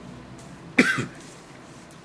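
A man's single short cough about a second in, over quiet room tone.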